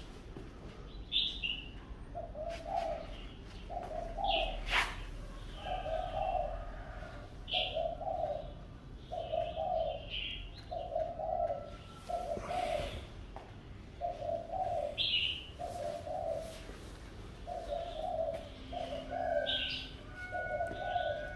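A dove cooing, a steady series of short coos about once a second starting about two seconds in, with a small bird chirping a few times higher up.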